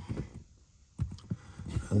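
A few light, irregular clicks and knocks of hands handling the plastic rear-deck trim around a car's rear speaker. The sharpest click comes about a second in.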